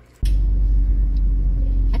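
Steady low rumble of a car heard from inside its cabin, starting suddenly just after the start.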